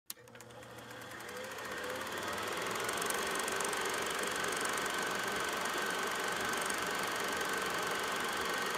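Road and engine noise of a moving car heard from inside the cabin, fading in over the first couple of seconds and then steady, with a faint steady whine over it.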